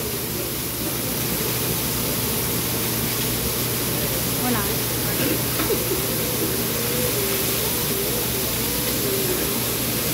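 Meat, noodles and vegetables sizzling on a flat-top griddle, a steady hiss with faint voices in the background.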